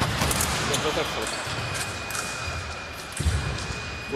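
Sabre fencers' feet thudding on the wooden hall floor and blades clicking together in a quick exchange, with a strong stamp about three seconds in. A thin steady electronic tone from the scoring machine starts about a second in, signalling a registered touch.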